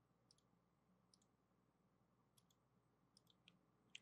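Near silence with a few faint, short computer mouse clicks spread through it.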